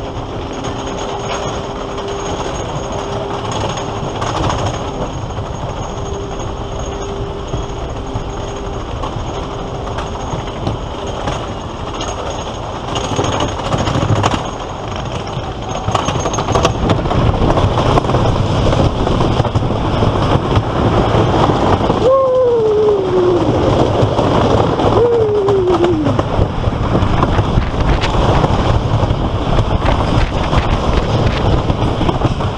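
Wooden roller coaster train climbing the lift hill with a steady mechanical clatter and hum. About halfway through it crests and the wheels' rumbling clatter on the wooden track grows louder as it picks up speed. Two short falling squeals come near the end.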